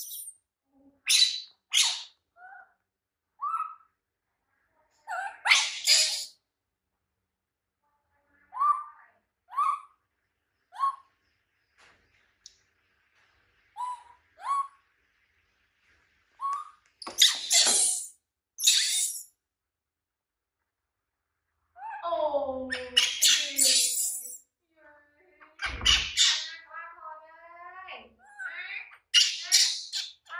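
Baby macaque crying in distress: short, sharp, high-pitched shrieks and brief squeaky calls, broken by silent gaps. The cries come closer together in a longer, wavering run over the last several seconds.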